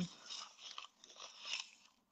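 Faint rustling and light scraping of things moved about by hand, someone rummaging through supplies in search of something.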